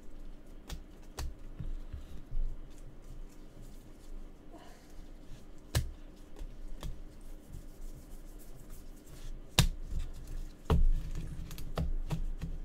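Trading cards being shuffled and handled by gloved hands: scattered light clicks and card-edge snaps, with a few sharper clicks and low thuds toward the end as the stack is tapped and set down on the table.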